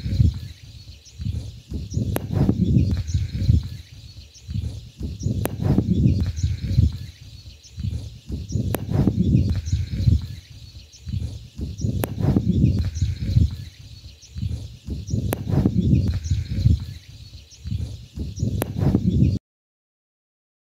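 Footsteps on dry grass and a dirt path while walking with a handheld camera, coming as uneven low thumps about once a second along with wind and handling noise on the microphone. Faint high chirping repeats in the background, and the sound cuts off suddenly near the end.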